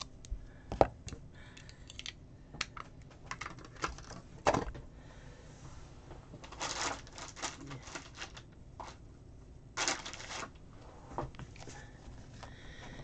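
A clear acrylic stamp block being handled and pressed onto a paper planner page: scattered light clicks and taps of plastic on paper and desk, with two short rustling scrapes past the middle and near the end.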